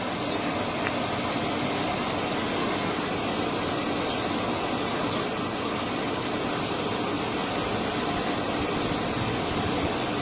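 Steady hiss over the low hum of an idling vehicle engine, unchanging throughout.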